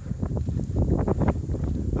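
Heavy wind buffeting a phone's built-in microphone: an uneven, gusty low rumble.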